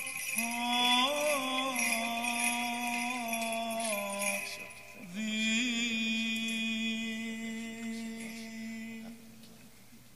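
A man chanting slow, melismatic Byzantine liturgical chant: long held notes with small ornaments, in two phrases with a short break about halfway, fading near the end. Small bells jingle behind the first phrase.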